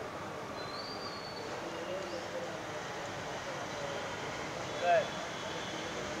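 Outdoor background: a steady hum of distant traffic with faint far-off voices, a faint high chirp about a second in, and one brief louder call with a bending pitch near the end.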